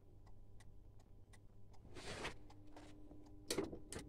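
Scooter turn-signal flasher relay clicking steadily as the indicators blink, a sign that the original flasher unit is working again. There is a short rustle about two seconds in and a sharper knock near the end.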